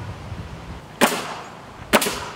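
Pneumatic nail gun driving nails into a wooden roof truss: two sharp shots about a second apart, each followed by a short fading hiss.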